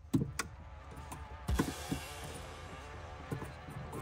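Plastic electrical connectors on a drive-by-wire wiring harness being handled and plugged together: several sharp clicks, with a stretch of soft rustling noise in the middle.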